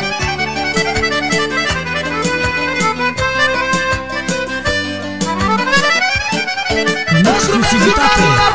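Live Romanian manele band playing an instrumental passage, with accordion-like fast rising and falling runs over a steady bass-and-chord beat. About seven seconds in, the music gets louder as a new melodic line with bending notes comes in.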